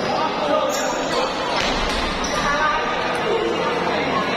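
Table tennis ball clicking off paddles and the table in a doubles rally, a few quick hits at uneven spacing, over steady chatter from people in the hall.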